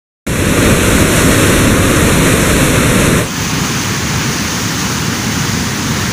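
Turbulent white water rushing out through a canal's sluice gates below a dam, a loud steady rush. About three seconds in it cuts abruptly to a slightly quieter, thinner rush.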